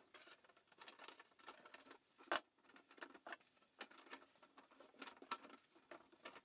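Faint, scattered clicks and scrapes of 20mm PVC conduit being handled and pushed into unglued plastic corner and tee fittings, with one sharper knock a little after two seconds in.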